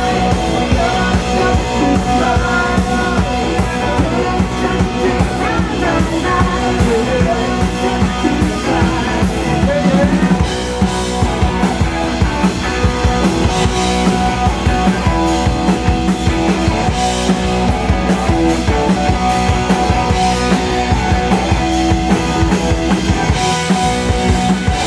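Live rock band playing at full volume: electric guitars, electric bass and a drum kit keeping a steady rock beat, with piano underneath.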